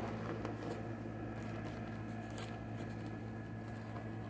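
Faint rustling and scattered light clicks as the Kirby vacuum's paper disposable bag is tucked into the cloth outer bag and the outer bag's zipper is worked shut, over a steady low hum.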